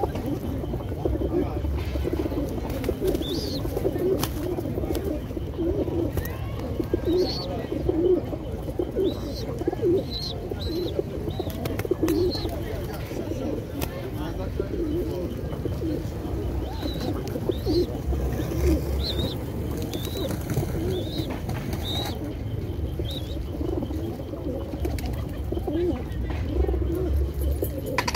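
A flock of racing pigeons cooing, many low coos overlapping without a break. A few short, high chirps come through now and then.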